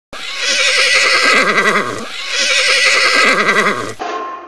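A horse whinnying twice, each call about two seconds long with a quavering, shaking pitch.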